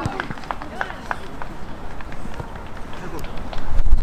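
Outdoor football pitch sound: faint voices of young players calling across the field, with scattered light knocks. A low rumble comes in near the end.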